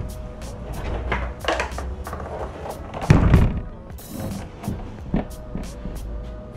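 Background music plays throughout. About three seconds in there is one heavy thump: the removed truck grille being flipped over and set down on the table.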